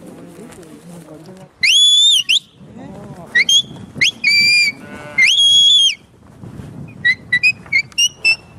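Sheepdog handler's whistled commands to a working dog. He gives a series of high whistles, several long and level that rise at the start and drop at the end, with short ones between them. Near the end comes a run of quick short chirps.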